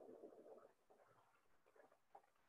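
Near silence: faint room tone, with a faint low murmur in the first half-second or so that fades out.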